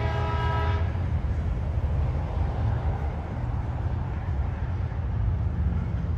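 Metrolink commuter train's air horn sounding a chord that cuts off about a second in. After that, the steady low rumble of the diesel-powered train rolling along the track.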